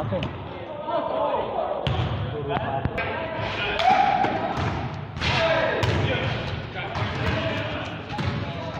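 A basketball bouncing on a gym floor during a pickup game, a few irregular thuds, with players' voices calling out and echoing through the large hall.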